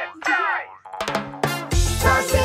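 Cartoon voices with sliding pitch and boing-like sound effects, then an upbeat children's song intro starting about a second in, with bass and drums coming in near the end.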